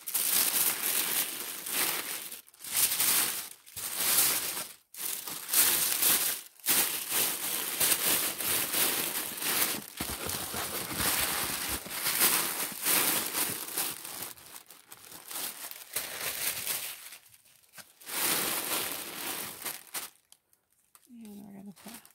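Tissue paper rustling and crinkling in irregular bursts as it is folded and tucked down over the contents of a cardboard box, dying down near the end.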